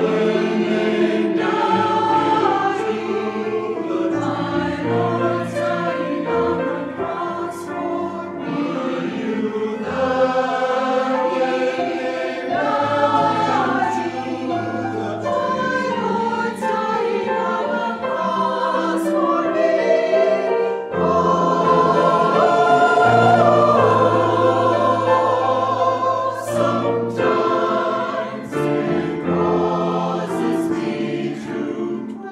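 Church choir of mixed men's and women's voices singing together, holding sustained notes that move in harmony.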